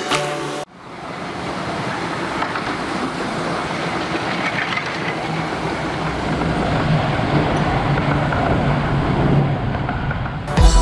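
Romney, Hythe & Dymchurch Railway 15-inch-gauge miniature train running on the track, its noise swelling gradually louder.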